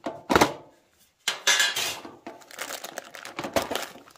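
A metal tin being opened: a loud clank from the lid, then scraping and rattling of metal parts inside, with small clicks and some plastic crinkling toward the end.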